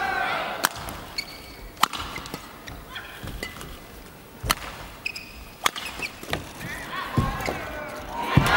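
Badminton rally: sharp racket strikes on the shuttlecock roughly once a second, with short squeaks of court shoes on the floor between them, over arena crowd noise.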